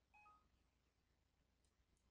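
Near silence, with one brief, faint electronic blip of a few short tones just after the start.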